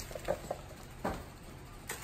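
A few light clicks and taps with soft rustling as small items, a cardboard gift box and wrapping paper are handled.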